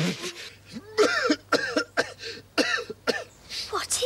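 Gruff, raspy voice of a furry sand-fairy creature in TV drama dialogue, speaking in short broken phrases with coughing, throat-clearing sounds, over a faint steady low hum.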